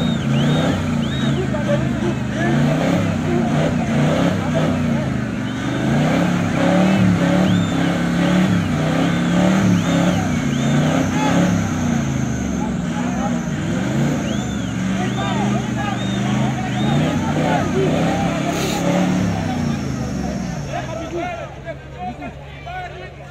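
A 4x4 pickup's engine revving up and down repeatedly as it wades through a muddy river, with many voices shouting over it. The engine fades near the end.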